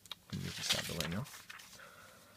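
A man's voice making a brief sound with no clear words, its pitch bending up and down, starting about a third of a second in and lasting about a second.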